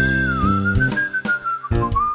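Song with a whistled lead melody over an instrumental backing track. A single pure whistled tone drifts gently downward in pitch, and the backing drops away briefly just past the middle.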